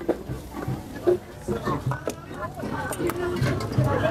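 Indistinct background chatter of several voices, with a few light clicks.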